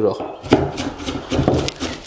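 Chef's knife finely chopping onion on a wooden cutting board: a quick, even run of knife strikes on the board, about five or six a second, starting about half a second in.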